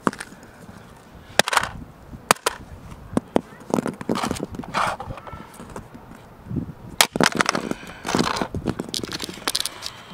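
A rock striking a plastic Casio fx-7700GE graphing calculator on asphalt: several sharp knocks with clatter between them, the loudest about seven seconds in, cracking its liquid-crystal screen.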